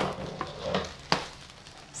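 Bubble-wrap packaging crinkling and rustling as it is handled and pulled open, with a few short crackles in the first half, quieter near the end.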